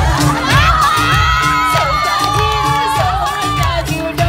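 Crowd of spectators cheering, with high shouts and whoops rising over loud stage music that keeps a steady beat.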